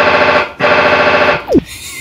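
Loud, distorted electronic buzzing sound effect in two long bursts with a short break between them, ending in a quick downward pitch swoop.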